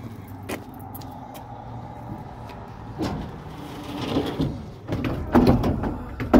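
Plywood board knocking and scraping against the pickup's bed and canopy as it is slid into place, over a low steady hum. The knocks start about halfway through and are loudest near the end.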